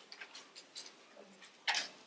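Thin Bible pages being leafed through by hand: a run of faint, quick flicks and soft rustles as the pages turn.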